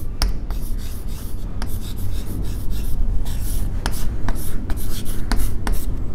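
Chalk writing on a blackboard: a run of short, irregular taps and scratches as letters are written out stroke by stroke.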